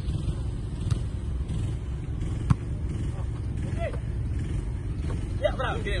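A volleyball struck once with a sharp smack about two and a half seconds in, over a steady low rumble. Players' short calls come in near the end.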